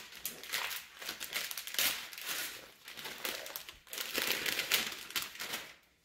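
Gift tissue paper crinkling and rustling in repeated handfuls as a present is unwrapped, loudest about four to five seconds in.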